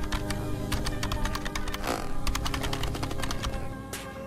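Rapid computer-keyboard typing, a quick irregular run of key clicks, over background music. The clicking stops near the end.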